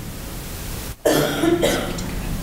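A man clearing his throat with a rough cough into a podium microphone, starting about halfway through and lasting about a second, over a steady hiss of room noise.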